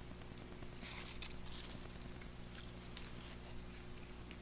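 Faint rustling of kale leaves as a hand moves through them, a few soft brushes about a second in, over a steady low hum.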